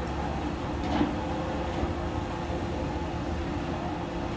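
A steady low mechanical rumble with a constant hum, and a single short knock about a second in.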